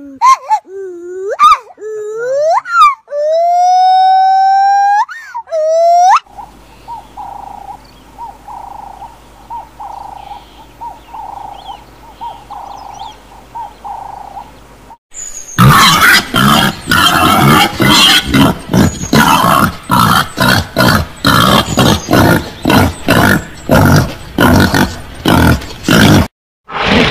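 A run of animal calls. First, loud swooping monkey calls for about six seconds. Then a dove coos softly and repeatedly, about once a second, over a low hum. From a little past halfway on, peccaries give dense rapid grunts, several a second.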